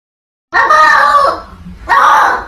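Cat giving a loud, drawn-out yowl about half a second in, lasting nearly a second, with a second yowl starting near the end.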